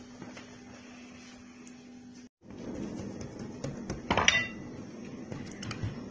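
Kitchen handling sounds on a worktable while ravioli dough is worked: a faint steady hum at first, then, after a brief break in the sound, rustling and handling with one sharp, briefly ringing clink about four seconds in.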